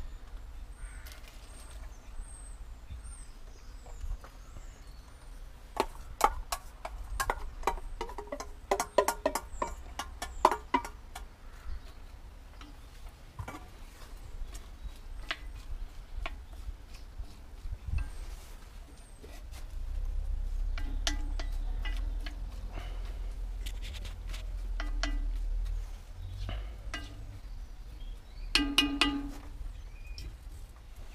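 Chopped onion tipped from a metal bowl into a Dutch oven of hot oil and stirred with a spoon: a quick run of metal clinks and scrapes, then scattered knocks on the pot. Birds chirp in the first few seconds, and a low rumble comes in during the second half.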